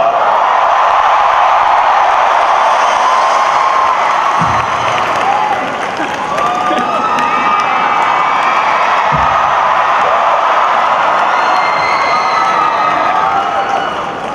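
A large arena crowd cheering, a dense steady din of voices with many high-pitched shrieks on top. It eases slightly about six seconds in and fades near the end, with two brief low thumps along the way.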